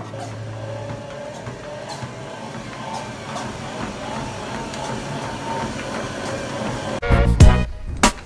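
Precor 9.23 treadmill running at a slow walking speed: a steady whir of belt and motor with a faint motor whine. Loud music cuts in about seven seconds in.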